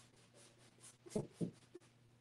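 Faint scratchy strokes of paint being worked onto a stretched canvas, with two short, slightly louder strokes a little past halfway.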